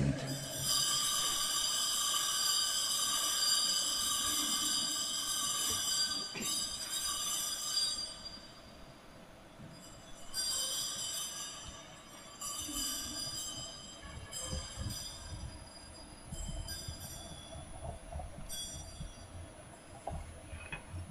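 Bells ringing: a long ringing chord that lasts several seconds, followed by several shorter strikes that each ring and fade, with a low rumble underneath.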